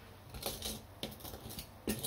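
A few light clicks and knocks from potter's tools being handled and put down by the clay worktable; the loudest knock comes near the end.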